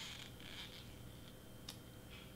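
Faint rustle of a printed paper candy wrapper handled and pressed around a chocolate bar, with a single small click near the end.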